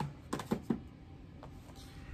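A few light plastic clicks and taps as Blu-ray cases are handled, about four in the first second and a faint one near the end.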